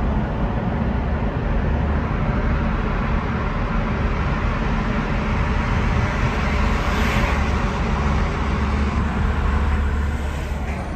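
A car driving at motorway speed, heard from inside the cabin: a steady low rumble of tyres and engine. About seven seconds in, as the car leaves the tunnel, a brief hissing swell rises and falls.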